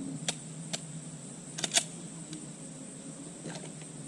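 A handgun clicking as it is made safe and holstered after a course of fire: a handful of short sharp clicks, the loudest a close pair just under two seconds in. Under them runs a steady high insect trill.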